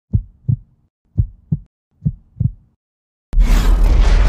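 Logo intro sound effect: a heartbeat, three double lub-dub thumps a little under a second apart, then a sudden loud boom about three seconds in that carries on as a low rumble.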